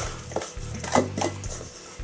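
Wooden spoon scraping and knocking against a stainless steel mixing bowl as thick chocolate batter is scooped out, a few short scrapes and knocks.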